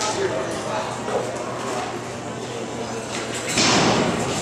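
A barrel-racing horse galloping on soft arena dirt, its hoofbeats in a large echoing metal hall. A louder burst of rushing noise comes near the end.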